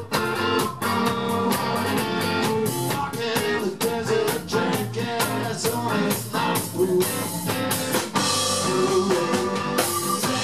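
Live blues-rock band: electric guitar played over a drum kit, with cymbals growing brighter near the end.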